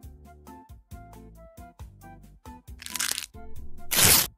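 Soft background music, cut across by two cracking sound effects of a cartoon tooth being pulled with pliers, one about three seconds in and a louder one at the very end.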